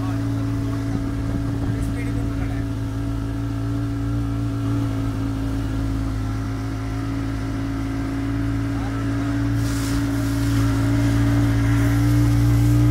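Motorboat engine running at a steady cruising speed, a constant drone with no change in pitch. Near the end a hiss rises over it and the sound gets slightly louder.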